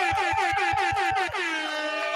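DJ-style air horn sound effect in a show intro: a rapid stutter of horn blasts, about seven a second, over a low beat, then dropping to a lower held horn note about two-thirds of the way through.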